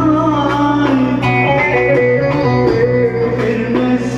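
Turkish folk dance tune (oyun havası) played live on a bağlama, a plucked long-necked lute, with electronic keyboard accompaniment: a plucked-string melody over a steady sustained bass.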